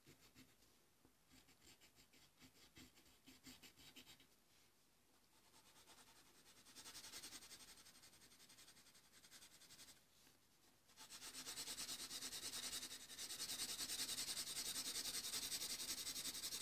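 Blue colored pencil shading on paper in quick back-and-forth strokes, a soft scratchy rubbing that is faint at first and grows louder and steadier about two-thirds of the way through.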